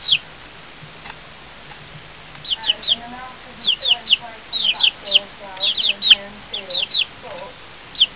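Young chickens peeping: short, high, downward-sliding peeps, often in pairs, come in quick clusters from about two and a half seconds in, with softer, lower chirps between them.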